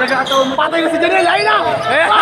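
Basketball game in a covered gym: voices shouting over crowd noise, with a basketball bouncing on the court.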